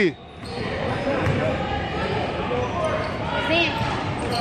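Basketball game in a gym: a ball bouncing on the hardwood court amid steady, echoing hall noise and scattered voices, with a short shout about three and a half seconds in.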